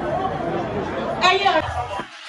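Crowd chatter in a large hall, several voices talking over one another, with one louder voice calling out a little over a second in.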